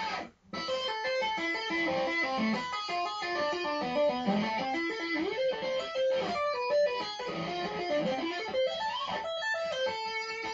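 Electric guitar playing a fast two-handed tapping arpeggio lick that moves between A minor and diminished seventh shapes with hammer-ons, pull-offs and tapped slides, played with little gain. After a brief gap about half a second in, it runs on as a continuous stream of quick notes climbing and falling. By the player's own account the run is not quite clean.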